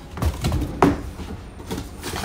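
Cardboard comic boxes and bagged comics being handled: a few knocks and rustles, the sharpest just under a second in.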